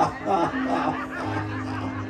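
A person laughing in short repeated bursts over background worship music with long held notes.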